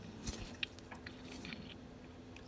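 Faint handling sounds: a few light clicks and scrapes as a hand works at the mill spindle's grooved index wheel beside its proximity sensor, over a faint steady hum.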